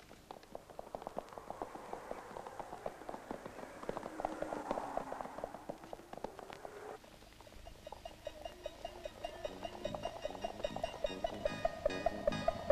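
Harness bells on a two-horse sleigh jingling in a quick, steady rhythm. About seven seconds in the sound changes abruptly, and ringing plucked-string music comes in and grows louder.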